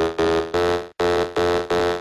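Electro dance music: a loud, buzzy synth chord chopped into short repeated stabs, about three a second, with a brief dropout about halfway through.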